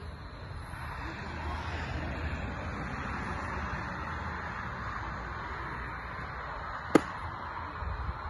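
A pitched baseball smacking into a leather glove once, a single sharp pop about seven seconds in, over steady background noise.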